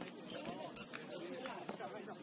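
Voices calling out during a football match, with scattered light clicks and one sharp knock a little under a second in, typical of a ball being kicked.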